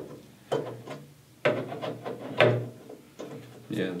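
A metal GPU mounting bracket being handled and fitted against a steel PC case tray: three sharp knocks about a second apart, with scraping and rubbing of metal on metal between them.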